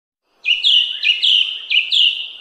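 House sparrows chirping: a quick run of loud, repeated chirps in close pairs, about two pairs a second, starting about half a second in.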